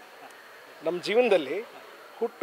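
A man's voice: a short drawn-out sound about a second in, its pitch wavering up and down, between stretches of low background.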